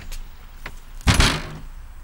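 A house's front door being shut: a faint click, then a loud knock with a short ringing tail about a second in.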